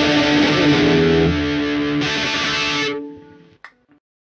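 Distorted electric guitar in a punk rock recording, playing and then holding a final chord that rings out and fades away about three seconds in as the song ends. A faint click follows just after.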